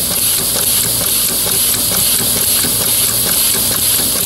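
A homemade compressed-air ram engine running steadily: a constant hiss of air exhausting through its valve blocks over a rapid mechanical clatter of the slapper and valve linkage. The valve arm is bumping against a finger held as a makeshift stop against over-travel, which keeps it running.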